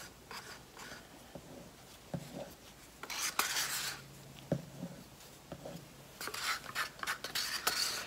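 Quiet scraping and rubbing of small paper and plastic paint cups being handled, with a few soft knocks, as pearl acrylic paint is scraped and poured into a pour cup.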